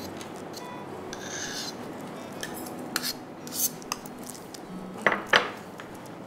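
Kitchen utensils and dishes clinking and knocking, with a few sharp knocks about five seconds in as the tools are handled for spreading the glaze.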